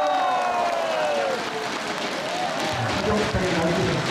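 Audience applauding in a hall after a performance, with one long voice call falling in pitch during the first second or so and a voice starting to talk near the end.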